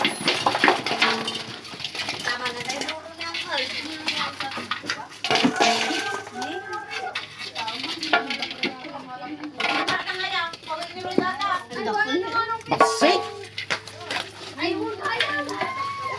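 Background voices talking, children among them, over scattered clanks and knocks of fish being handled in a metal basin.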